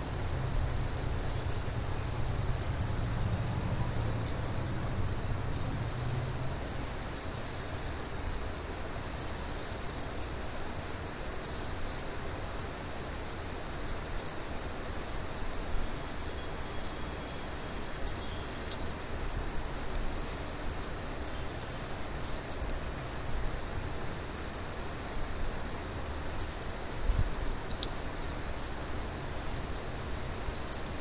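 Steady background hiss and hum of room tone with a faint, thin high whine. A low hum fades out after the first few seconds, and a few faint clicks come later.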